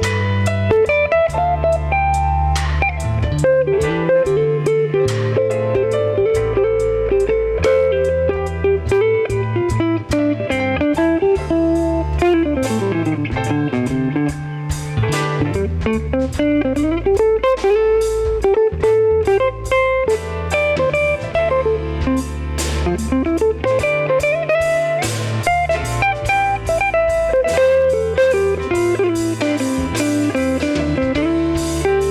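Solo on a hollow-body archtop electric guitar: a run of quick single notes that climbs and falls, over a low bass line and drums.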